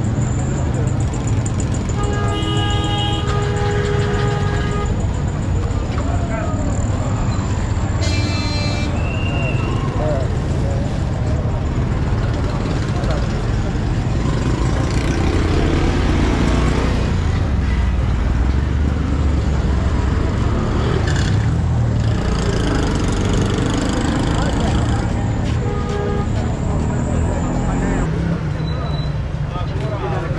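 Busy street ambience: motor traffic running steadily under the chatter of passers-by, with vehicle horns tooting a few times, at about two to four seconds in, near the nine-second mark and again near the end.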